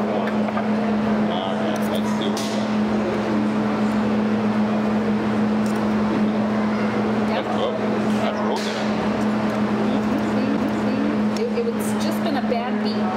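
Indistinct conversation at a table over a steady low hum, with a couple of light clinks of forks on plates.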